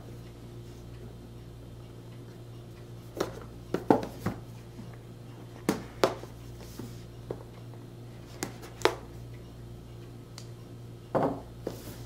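A cardboard product box being handled and opened on a table: a scattered series of short taps, knocks and scrapes, in small clusters, over a steady low hum.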